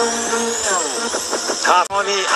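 Sports TV broadcast bumper music with a high rising sweep, and a short vocal phrase near the end.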